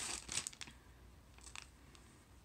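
A piece of hand-dyed cross-stitch fabric rustling as it is picked up and unfolded. It is loudest in the first half second, with a fainter rustle about a second and a half in.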